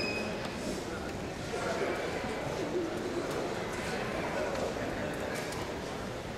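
Steady, indistinct chatter of spectators echoing in a large gym, with no single voice standing out.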